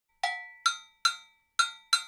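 Gankogui, the West African iron double bell, struck five times about half a second apart, the first stroke lower in pitch than the other four, playing the timeline pattern that opens the song.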